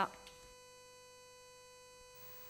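Faint, steady electrical hum: a constant tone with a few higher overtones and no change in pitch, left in a gap between two stretches of speech. The last syllable of a spoken word trails off at the very start.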